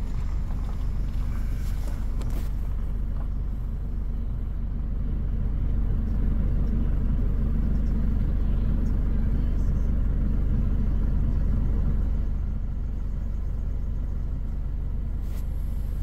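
Steady low rumble of a car's engine and tyres heard from inside the cabin at low speed, a little louder through the middle of the stretch.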